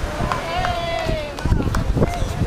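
People talking at a table with wind buffeting the microphone, under a constant low rumble. About half a second in, one voice holds a long, high drawn-out sound for nearly a second.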